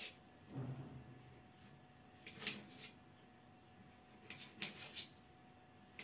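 Small kitchen knife chopping a lemon on a ceramic tile floor: a handful of faint, irregular clicks as the blade cuts through and taps the tile, the sharpest about halfway through and a few more close together near the end.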